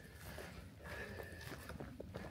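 Faint footsteps of a hiker walking over dry leaf litter and loose rocks.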